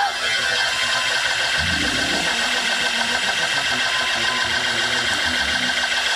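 Keyboard holding a sustained chord under a steady wash of congregation shouting and applause.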